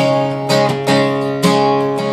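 Steel-string acoustic guitar strummed solo: about six quick strums over a ringing chord, in the easy rhythm of a slow country song.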